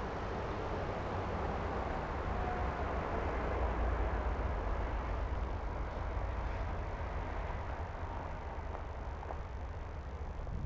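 Wind and movement noise on the microphone of a camera carried along a path: a steady low rumble with a hiss over it.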